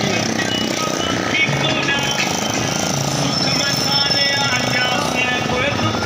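Small motorcycle engines running close by, mixed with people's voices and music.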